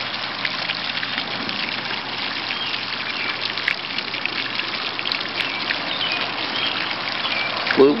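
Small fountain's single jet of water splashing steadily back into its basin.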